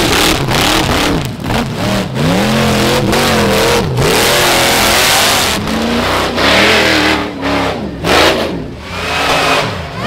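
Rock bouncer buggy engine revving hard over and over, its pitch climbing and dropping every second or two, over a steady hiss of spinning tires throwing dirt as it claws up a steep hill.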